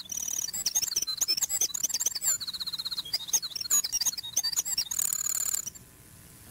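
Recorded winter wren song played back: a very fast, compressed run of many high, tinkling notes and trills, stopping suddenly near the end.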